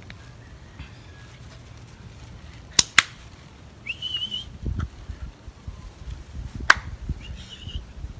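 A person calling a puppy with short whistles and sharp clicks: two clicks in quick succession about three seconds in, a short wavering whistle just after, then another click and whistle near the end, with low thumps of movement in between.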